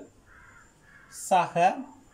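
Marker pen rubbing faintly on a whiteboard in short strokes as it writes, broken about a second and a half in by a short, loud two-part cry.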